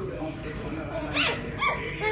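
Toddler's two short high-pitched squeals, each rising and falling in pitch, about a second in and again half a second later, over soft voices.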